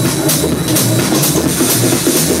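Techno played loud over a club sound system: a steady bass-heavy beat with hissing hi-hat strokes about twice a second.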